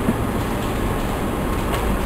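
Steady rushing noise with a low rumble underneath: the room's background noise in a pause between spoken sentences.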